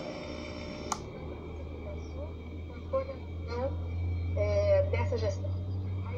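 A toggle switch clicks once about a second in, then a crystal radio plays a faint AM broadcast voice over a steady low hum. The wave trap has been switched out and the station comes back.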